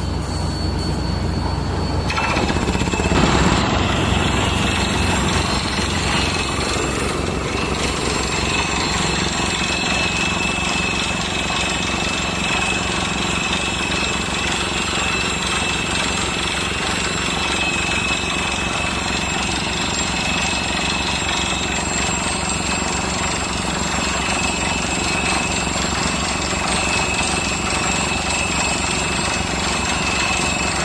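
MW200 crawler water well drilling rig drilling with its down-the-hole air hammer: a fast, steady, rattling hammering over the running engine. It sets in about two seconds in, is loudest just after, then runs on evenly.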